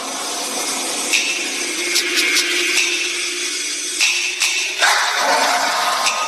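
Intro of a staged dance performance's backing track: a hissing, rattling metallic soundscape over a low drone, with a few sharp clinks.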